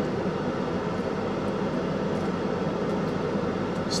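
Steady hiss and hum inside a car's cabin, with no sudden sounds.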